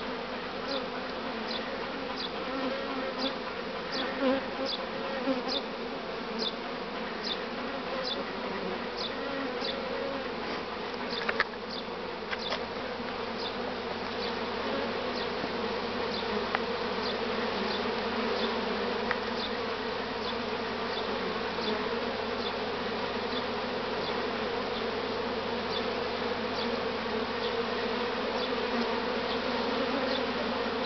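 Honey bees buzzing in a steady, dense hum as many fly in and out of the hive entrances: the busy flight of colonies that have come out of winter in good shape. A faint, high, short sound repeats about every half second, clearest in the first part.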